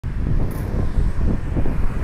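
Gusty low wind noise on the microphone mixed with street traffic.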